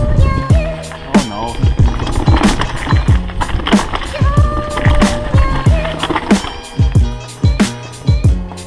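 Background music: a slow electronic beat with deep, falling kick drums, crisp hi-hats and held synth notes.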